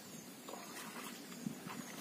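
Faint background noise with a few soft ticks, one slightly louder about one and a half seconds in.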